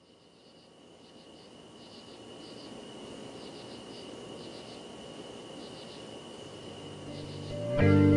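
A quiet field ambience fading in: a steady low rush with insects chirping in short repeated trills over it. Near the end a guitar-led music track comes in loudly.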